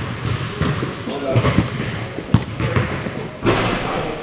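Basketballs bouncing on a hardwood gym floor, with voices in the background and a short high squeak about three seconds in.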